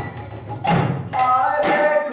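Mrdanga, the two-headed Indian barrel drum, played by hand in a rhythmic pattern of separate strokes. A deep bass stroke comes about a third of the way in, and higher strokes with a ringing, held tone follow in the second half.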